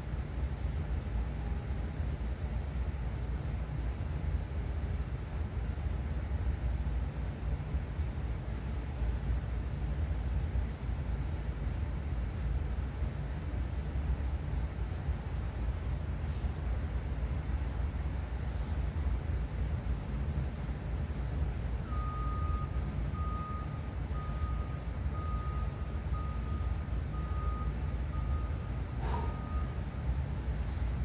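Steady low outdoor rumble. From about two-thirds of the way in comes a run of evenly spaced high-pitched electronic beeps, and a single knock sounds just before the beeps stop.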